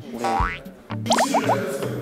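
Cartoon-style comic sound effects over background music. A rising whistle-like glide comes first, then about a second in a sudden hit followed by four quick rising blips.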